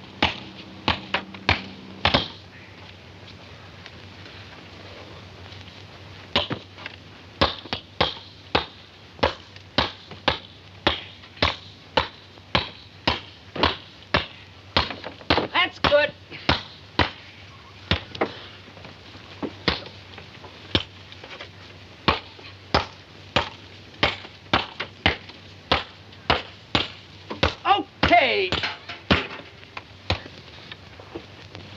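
Two people pounding raw steaks: a run of sharp, separate strikes, about two a second, after a few quiet seconds early on.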